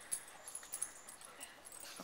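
Faint sounds of dogs moving about among garden plants, with a few light high ticks and no clear barks or whines.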